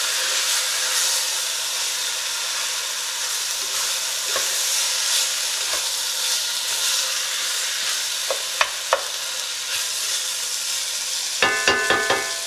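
Sliced onions and roasted butternut squash sizzling steadily in a hot enamelled cast-iron pot as a spatula stirs them. A little after eight seconds in, three quick knocks of the spatula against the pot.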